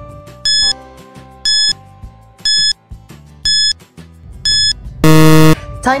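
Quiz countdown timer sound effect: five short high beeps about a second apart, then a louder, lower buzzer about five seconds in signalling that time is up, over faint background music.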